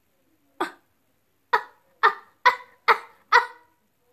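A person's voice making six short grunted "uh" sounds: one, then after a pause five more in an even run, about two a second.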